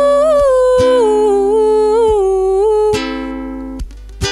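A woman humming the melody wordlessly over a strummed ukulele. The voice holds long notes that bend gently between chords, and in the last second the sound drops as a strum rings out.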